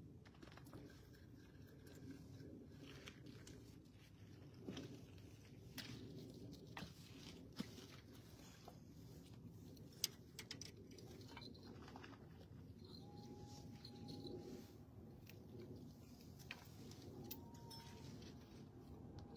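Near silence: a faint low background hum with scattered small clicks and ticks, the sharpest about ten seconds in, and a faint held tone about two-thirds through.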